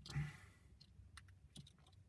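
Faint small plastic clicks and taps, half a dozen or so scattered through a couple of seconds, as LEGO minifigure parts are handled and pressed together, after a short soft hiss at the start.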